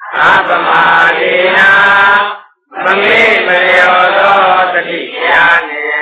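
Chanted recitation by voice, in two long drawn-out phrases with a short break between them, typical of Buddhist devotional chanting at the close of a Dhamma talk.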